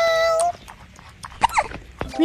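A pet animal's cry: one steady, high-pitched call about half a second long, then a shorter call that slides up and back down about a second and a half later.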